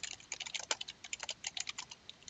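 Computer keyboard being typed on: a quick, steady run of keystrokes.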